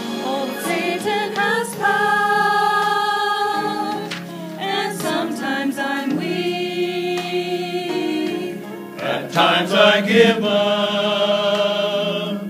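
Mixed church choir of men's and women's voices singing in long held phrases with vibrato, with short breaths between phrases about four seconds in and again near nine seconds.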